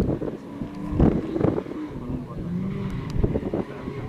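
BMW E36 race car's engine running in a slalom run, its pitch rising and falling as the driver lifts off and gets back on the throttle between the tyre gates. Several loud thumps stand out, one at the start and one about a second in.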